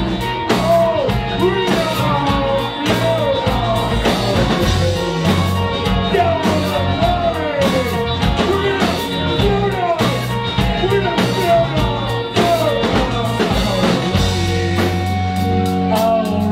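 Live rock band playing: drum kit and electric guitar, with a singer on a microphone.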